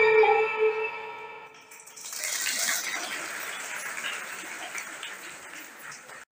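The recorded dance music ends on a held, falling note that fades out in the first second and a half. Then an audience claps, strongest at first and easing off over the next few seconds, as applause for the finished dance.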